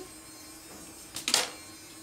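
A steady low hum, with one brief rustle of clothing being handled about a second and a quarter in.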